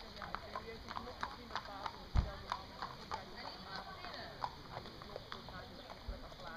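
Hoofbeats of a Welsh pony moving on a sand arena: a steady run of quick, light clip-clops. A dull low thump sounds about two seconds in.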